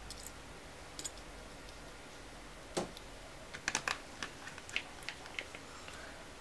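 Light, scattered clicks and ticks of a hand screwdriver and small screws on the sheet-metal back cover of an LCD panel, as screws are put back in. A single click comes early, a sharper one near the middle, and a run of quick clicks in the second half.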